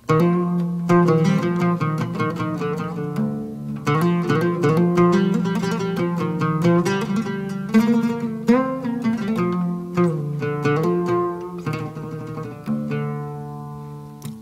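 Solo oud playing a hymn phrase with added ornamentation: quick runs of plucked notes and embellishments around the melody. It starts suddenly, and the last notes ring and die away near the end.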